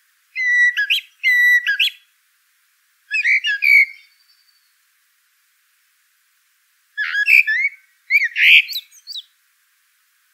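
A songbird singing: short phrases of clear whistled notes and quick warbles, in two groups separated by a pause of about three seconds.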